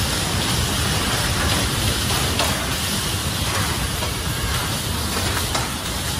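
Bumper cars running around the rink: a steady noisy rumble with a couple of faint knocks.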